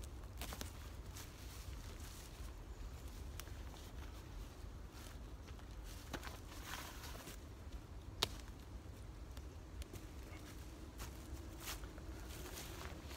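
Faint footsteps in dry fallen leaves and the rustle of a ripstop fabric bag being pulled out and opened up, with one sharp tick about eight seconds in.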